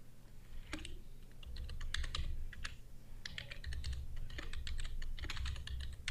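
Typing on a computer keyboard: a run of quick, irregular key clicks starting about a second in, over a faint low hum.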